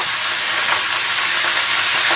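Hot fat and juices sizzling steadily in a roasting tin of roasted chicken pieces.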